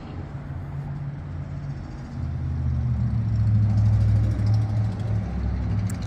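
Low engine rumble of a motor vehicle, building about two seconds in to its loudest around four seconds in, then easing a little.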